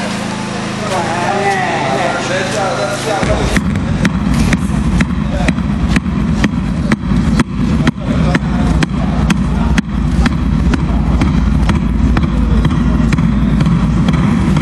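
Voices talking for the first three seconds, then a sudden low rumble on the camcorder's microphone as the camera is carried along, with knocks or footsteps about two to three a second.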